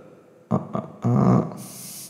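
A man's wordless vocal sounds close to the microphone, a hesitating hum or mouth noise, followed near the end by a brief breathy hiss.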